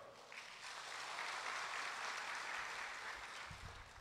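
Audience applauding, a fairly faint, steady clapping that builds up just after the start and thins out near the end.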